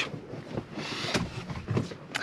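Rustling handling noise with a few light clicks, the cab's fabric blackout window screens being handled and pressed onto their studs.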